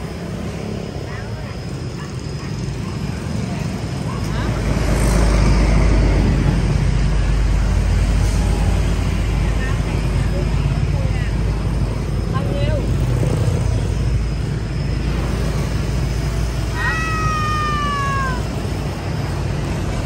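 A long-haired calico Persian cat meows once near the end, a single falling call about a second long. Under it runs a steady low rumble of street traffic.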